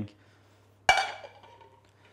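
A stainless steel saucepan set down with a single metallic clank about a second in, its ringing fading over about half a second.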